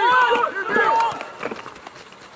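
Several voices shouting across a football pitch during play, overlapping calls loudest in the first second or so and then dying away.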